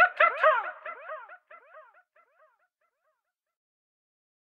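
A short, high, yelp-like cry at the close of a dancehall track, repeated by an echo effect about four to five times a second and fading away over about two and a half seconds, then silence.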